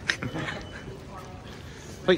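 Faint, indistinct voices over steady room noise.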